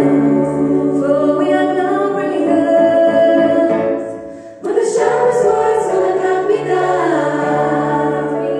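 Female vocal ensemble singing sustained chords in harmony through microphones, over steady low piano notes. The sound fades just after four seconds, then the voices come back in loudly together.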